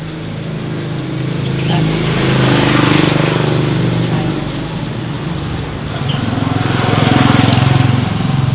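Motor vehicle engines running nearby and passing. The engine sound swells about three seconds in and again near the end.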